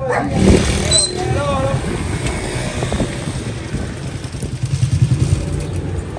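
A small motorcycle engine running at the kerb, its low rumble rising and falling unevenly towards the end.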